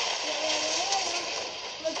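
A voice saying "yeah, yeah" over a steady rushing noise from a movie soundtrack played through a small portable screen's speaker.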